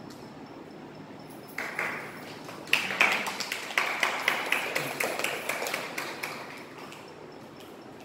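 Audience applauding as a book is presented. The clapping starts about a second and a half in, is loudest around three seconds, and fades out before the end.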